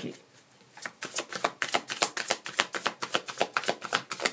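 A deck of tarot cards being shuffled overhand in the hands. After a short hush, a fast, even run of soft card slaps starts about a second in, about seven a second.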